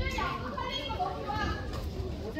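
Ringside spectators shouting in high, raised voices, calling out to the boxers during the bout.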